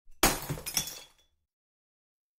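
Glass-shattering sound effect: a sudden crash followed by a couple more breaking hits, fading out within about a second.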